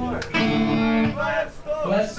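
Distorted electric guitars and band playing live at a loud hardcore show: a held chord breaks off, a new chord is struck about a third of a second in, the sound drops briefly near the middle and the full band comes back in at the end, with crowd voices under it.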